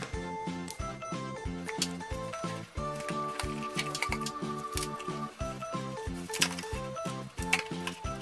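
Background music with a steady beat and held tones.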